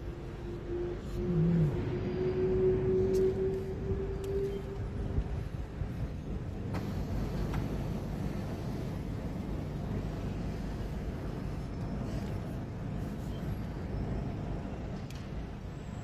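Car interior driving noise as the car moves off from traffic lights: a low engine and road rumble, with a steady hum that rises slightly in pitch over the first five seconds.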